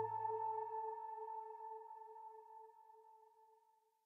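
The last held note of a slow, melancholic cello-and-violin instrumental piece dying away over about three seconds, ending in silence.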